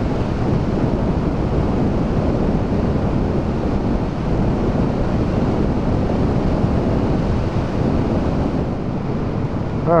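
Steady wind rush over a helmet-mounted microphone at road speed on a motorcycle, with the 2013 Honda CB500X's parallel-twin engine and tyre noise running underneath.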